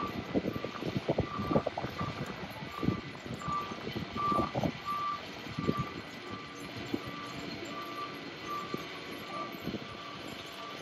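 Repeated electronic beeping, about one and a half short beeps a second, over irregular low knocks and rattles from the street.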